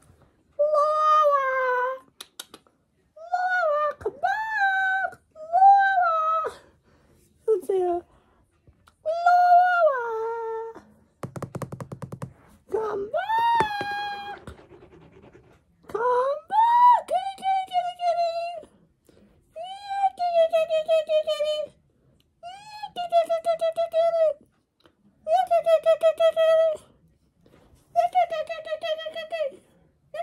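A person's voice making a run of wordless, drawn-out character noises in short calls of a second or two, each swooping in pitch, the later ones with a fast rattling flutter. A brief low rasp comes about eleven seconds in.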